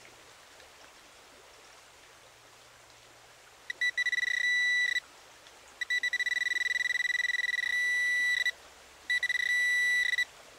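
Garrett Pro Pointer pinpointer sounding its high-pitched alert as its tip is brought to a one-pence coin. There are three bursts, the first a few seconds in, each starting as a fast stutter of beeps that runs into a steady tone.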